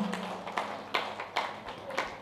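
A pause in a man's talk: his voice dies away in the room at the start, then a few faint, scattered clicks or taps.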